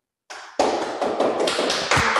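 Hand clapping from many people, starting about half a second in and running on as a dense, steady patter.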